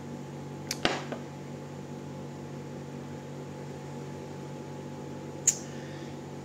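A steady low electrical hum, with a few sharp knocks about a second in as a drinking glass is set down on a hard surface, and one short high click near the end.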